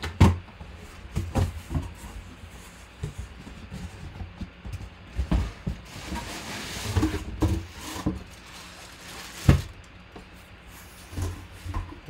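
Cardboard box flaps pulled open and a football helmet in a plastic bag lifted out: scattered knocks and scrapes of cardboard, a rustle of plastic about six seconds in, and one sharp knock near the end.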